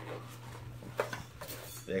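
Light handling noise from gear being picked up off a table: soft fabric rustle and a couple of short clicks and knocks of a stainless steel canteen cook set, about a second apart.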